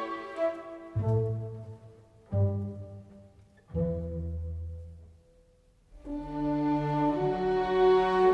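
Slow background music on bowed strings: three low notes come in one after another, each fading away, then a brief hush before fuller strings resume about six seconds in.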